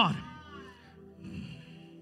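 The echoing tail of a man's shouted word falling in pitch, then a soft sustained keyboard chord held underneath.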